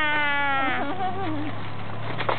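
A young child's drawn-out, wordless vocal whine. It slowly falls in pitch, then wavers and fades about a second and a half in.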